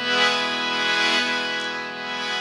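Harmonium holding one steady chord, its reeds sounding several notes together.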